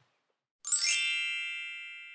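Silence, then about two-thirds of a second in a sparkly chime sound effect: a quick shimmering sweep up into a bright ding of several high ringing tones that slowly fades away.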